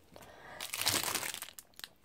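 Clear plastic packaging crinkling as a spiral-bound sticker book in its sleeve is picked up and handled. The crinkling builds about half a second in and fades after a second or so, with a couple of light clicks near the end.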